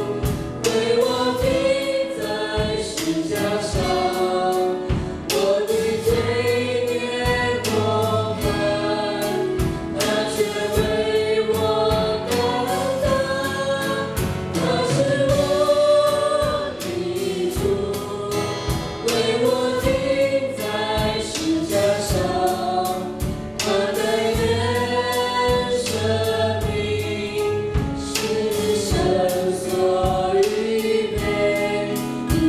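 Church worship band performing a Mandarin worship song: a lead singer and three backing singers at microphones over grand piano, acoustic guitar and drum kit, with a steady drum beat.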